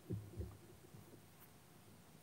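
Two soft, low thuds in the first half second, then faint room tone.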